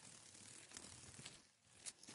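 Near silence: faint background hiss with a few soft clicks.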